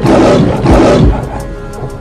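A lion's roar as a sound effect over intro music: loud and rough for about the first second, then fading away under the music's steady tones.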